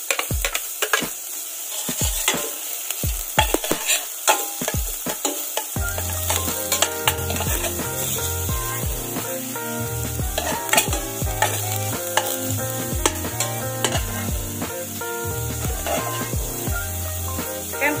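Chopped onion and garlic sizzling in hot oil in a stainless-steel pot, with a metal spoon clicking and scraping against the pot as it stirs. Background music comes in about six seconds in and runs under the sizzle.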